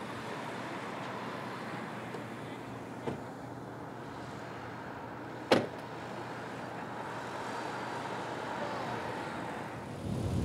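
Road traffic: a slow queue of cars and trucks running and idling, a steady wash of engine and tyre noise. A light knock about three seconds in and a single sharp bang a little past halfway, the loudest sound.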